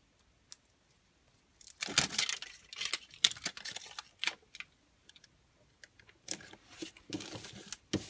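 Aluminum foil tape crinkling and rustling as it is handled, peeled and pressed down onto cardstock, in irregular crackly bursts from about two seconds in and again near the end.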